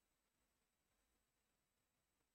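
Near silence: digital silence with only a faint noise floor.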